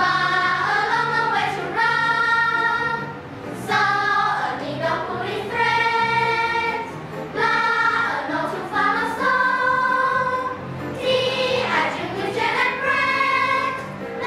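A children's choir singing an English song in unison over instrumental accompaniment, in phrases of about three to four seconds with short breaks between them.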